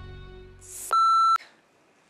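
Sustained background music fades out, then a brief hiss swells into a single loud electronic beep, about half a second long, that cuts off abruptly.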